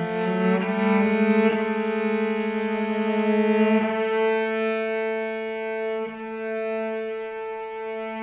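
Solo cello playing long held bowed notes, changing note a few times and growing softer about six seconds in.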